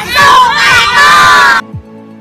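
A loud shouted voice exclamation that cuts off abruptly about one and a half seconds in. Quiet background music with a steady beat of about two a second follows.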